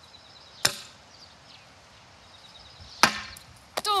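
Throwing knives striking a plywood target board: one sharp wooden thwack about half a second in and another about three seconds in, followed by a few lighter clicks.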